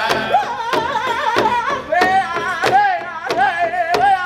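A powwow drum group singing a double-beat contest song: many voices singing high and wavering in unison over a large powwow drum that the drummers strike together about every two-thirds of a second.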